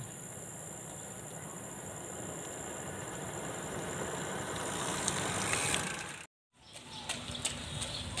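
A vehicle approaching along the road, its engine and tyre noise growing steadily louder for about five seconds over a steady high insect buzz. The sound cuts off suddenly about six seconds in.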